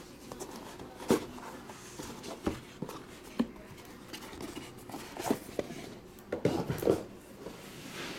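Rigid card presentation box being handled and opened. Short knocks, taps and light scrapes come at irregular intervals as the lid and folding flaps are lifted and set down.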